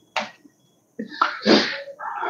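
A man's short, sharp burst of breath about one and a half seconds in, sneeze-like, after a brief catch of breath; a faint click just after the start.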